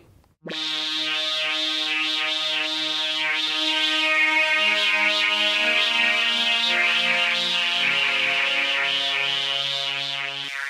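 Korg synthesizer playing slow, held chords through the Line 6 HX Stomp's band-pass filter, with a bright narrow band over the chord. The chord starts about half a second in and changes twice, about halfway through and again near the end.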